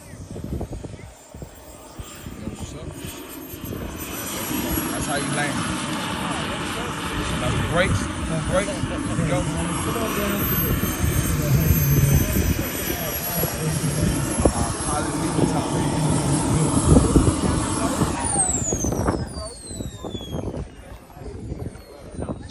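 Small gas-turbine engine of a large radio-controlled jet whining with a rushing exhaust as the model lands and rolls along the runway. Over the last few seconds the whine falls steadily in pitch as the turbine winds down.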